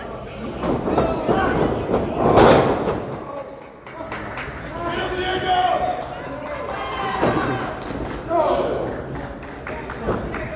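A wrestler's body hitting the ring mat with a loud thud about two and a half seconds in, over spectators shouting; a couple of lighter knocks follow later.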